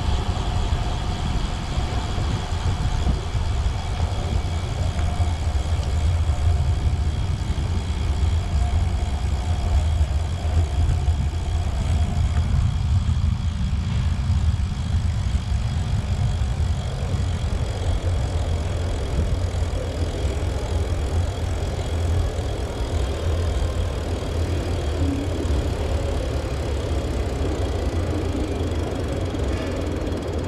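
Steady low rumble of wind and road vibration on a bicycle-mounted camera riding along a city street, with traffic noise mixed in.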